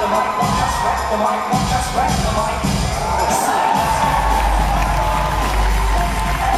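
Loud music with a strong bass beat over an audience cheering and screaming. The bass drops out briefly twice.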